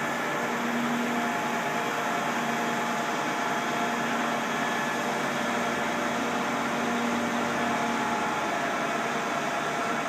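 Crane truck's engine running steadily while the boom lowers a roller coaster car on its hook, a continuous hum under a wash of noise that rises slightly about a second in and again near the end.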